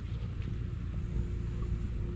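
Steady low wind rumble on a chest-mounted action camera's microphone, with no distinct events.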